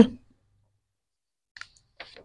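A short, faint click about one and a half seconds in, a stylus tapping a full stop onto a pen tablet, after the last syllable of a spoken word and a quiet pause.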